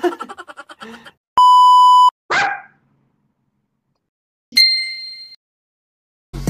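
A man laughing briefly, then a loud, steady electronic beep lasting under a second, the kind used as an editing sound effect. A short burst of sound follows, and later a single ringing ding that fades away.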